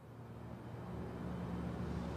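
Outdoor street ambience fading in: a steady low hum and hiss of distant traffic.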